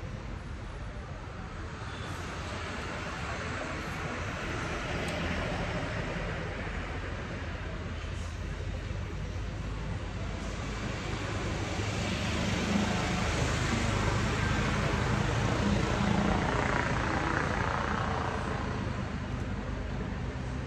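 Road traffic passing: a low, steady engine rumble and tyre noise that swells as vehicles go by, loudest a little past the middle.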